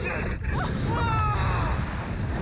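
Riders screaming while being flung on a slingshot reverse-bungee ride: one long, high scream through the middle, over steady wind rumble on the ride-mounted microphone.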